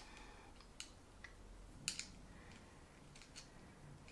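Faint, scattered small clicks and ticks of metal contact prongs being screwed onto a dog training collar's receiver, a handful of them in the first half, with near silence between.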